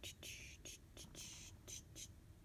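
Faint whispering: a handful of short, breathy hisses with no voiced sound, spread through the two seconds.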